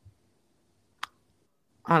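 A single sharp click about a second in, in an otherwise very quiet pause.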